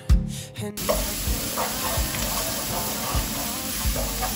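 A moment of background music, then from about a second in, chopped onion and garlic paste sizzling as they fry in a frying pan, with a wooden spatula stirring and scraping them around.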